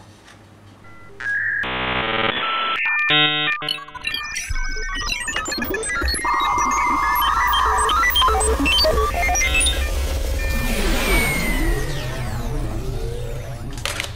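Electronic sound effects: quiet at first, then a burst of stacked bleeps about two seconds in, followed by a jumble of short beeps, a steady buzz and sweeping tones over a low hum.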